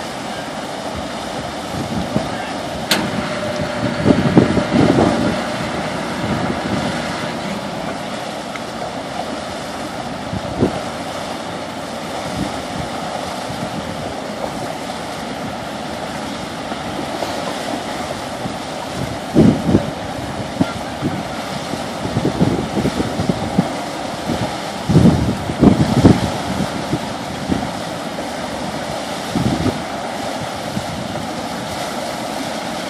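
Steady rush of churning water and wind as a large steamship car ferry backs into its slip. Gusts of wind buffet the microphone about four seconds in and several times in the last ten seconds.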